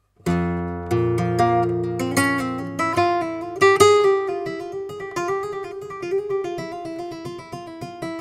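Nylon-string flamenco guitar played solo. It comes in suddenly with a deep bass note held for about a second, then runs into a quick picked melodic line with strummed chords.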